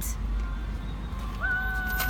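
Low steady rumble of an idling car heard from inside the cabin. About one and a half seconds in, a steady high-pitched tone of unclear source starts and lasts just under a second.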